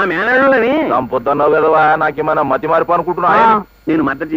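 Speech only: a man talking, with short pauses about a second in and near the end.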